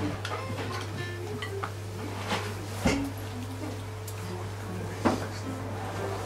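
An archtop electric guitar playing scattered single notes, warming up before a tune, over a steady amplifier hum. A short laugh comes about a second in, and a few sharp knocks or clinks sound near the middle and toward the end.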